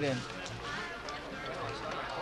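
Men's film dialogue with music playing low in the background.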